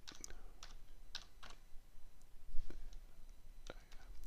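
Typing on a computer keyboard: a handful of separate, unevenly spaced keystrokes as a short word is typed in.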